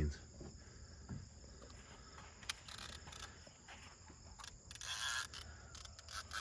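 Faint, steady chirping of crickets, with two brief rasping noises, one about midway and one near the end.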